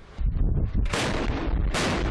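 A warship's deck gun firing twice, two sharp cracks under a second apart, over a steady low rumble.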